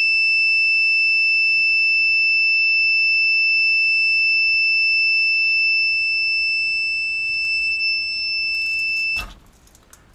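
Lost-plane-finder buzzer on a mini quadcopter sounding one steady, very loud, high-pitched tone, set off by the loss of the radio signal. It cuts off suddenly about nine seconds in as the battery is disconnected.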